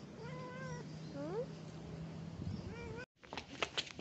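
Domestic cats meowing as they crowd together over fish: several short meows, one rising sharply, over a low steady drone. Just after three seconds the sound drops out briefly, followed by a few clicks.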